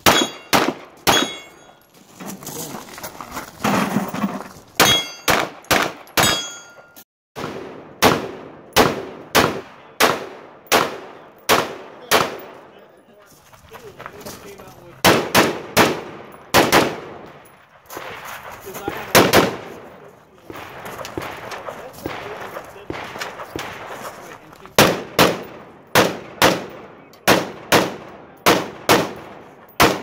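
Gunfire from an AR-15-style rifle in a run of shots, mostly in pairs and short strings about a second apart, with a few brief pauses. A short metallic ring follows some of the shots near the start.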